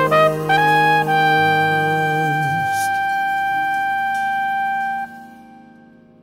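Jazz brass horn playing the closing phrase of the song: a quick rising run, then one long high note held for about four seconds over a lower held chord that ends about halfway through. The horn stops about five seconds in and the sound fades into reverb.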